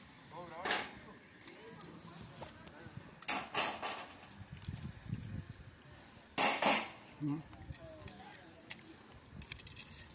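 Metal tongs raking and scraping through a bed of small loose stones over roasted clams: three short gravelly scrapes, about a second in, near the middle and two-thirds of the way through, with faint voices in between.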